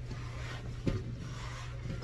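Damp microfiber cloth being wiped over a large exercise ball, a faint soft rubbing, with a single sharp knock about a second in, over a steady low hum.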